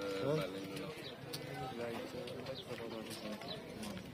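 Indistinct background voices: people talking at a market stall, quieter than close-up speech.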